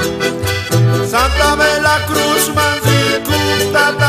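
Bolivian Santa Vera Cruz copla played on accordion with strummed guitar and charango over a steady low beat, an instrumental passage with no clear singing.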